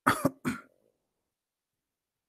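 A man coughing twice in quick succession, both within the first second.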